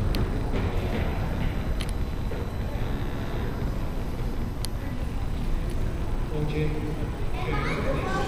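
Background chatter of people in a large hall, under a steady low rumble, with a few faint clicks.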